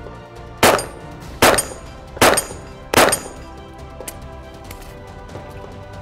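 Four pistol shots from a Springfield XD, evenly spaced about 0.8 s apart within the first three seconds, each followed by a brief high ring.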